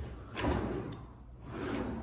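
A bathroom vanity drawer being pulled open: a short slide and knock about half a second in, then a lighter click.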